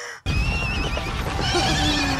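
Horses whinnying, shrill and wavering, over dense battle noise in a film soundtrack.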